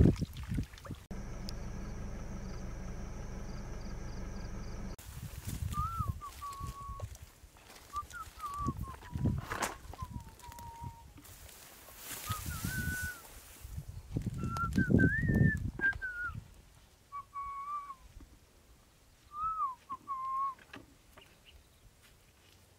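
Short whistled notes that slide up and down, repeated in phrases over about fifteen seconds, with rustles and a few dull thumps between them. A steady hum fills the first few seconds.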